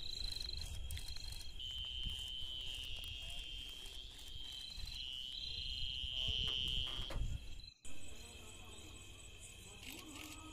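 Night insects, crickets, chirring in a steady high-pitched drone over a low rumble. The sound drops out abruptly for a moment about eight seconds in, then carries on thinner.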